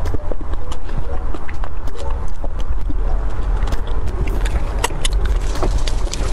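Close-miked eating of roasted beef bone marrow: a metal spoon scraping against the bone, and wet mouth clicks and smacks as the marrow is eaten, in many quick irregular ticks over a steady low rumble.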